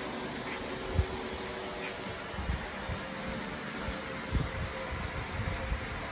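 Steady hum of a shop fan, with a few low thumps.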